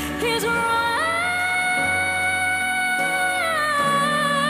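A female pop singer's live vocal over a sustained band backing: her voice slides up about a second in into a long held high note, then drops back down near the end.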